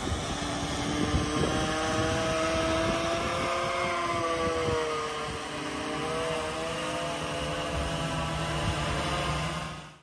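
Titan Cobra VTOL drone's electric motors and propellers overhead, several propeller tones humming together and wavering slightly in pitch as it transitions back to hover for landing, over wind rumble on the microphone. The sound fades out at the very end.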